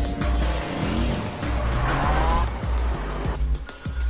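Music with a pulsing bass beat, and a car's tyres squealing briefly near the middle.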